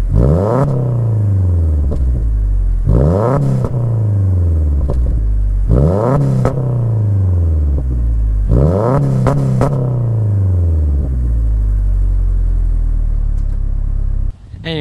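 Subaru Outback's boxer engine, heard at the exhaust, revved four times in quick throttle blips: each time the revs jump sharply and then fall back slowly. It then settles into a steady idle for the last few seconds.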